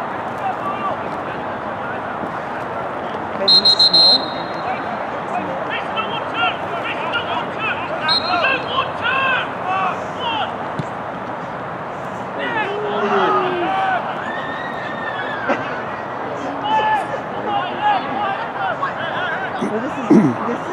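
Referee's whistle: one shrill, steady blast of about half a second about three and a half seconds in, the loudest sound here, and a short fainter toot about eight seconds in, over distant shouting and chatter from the pitch and sideline.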